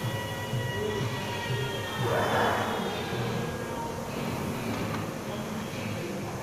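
Background music playing over the whirring of a rowing machine's air flywheel as it is pulled through hard strokes, with a louder whoosh about two seconds in.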